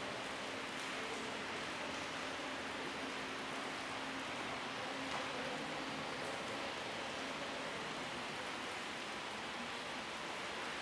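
Steady, even background hiss with a faint low hum underneath, unchanging throughout.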